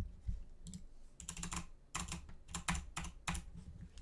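Computer keyboard keys being pressed in irregular clusters of clicks, with short pauses between them.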